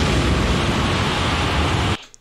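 Large concert crowd cheering and screaming in a live recording, a steady roar of noise without tune or voices standing out, which cuts off suddenly at the end when the playback is paused.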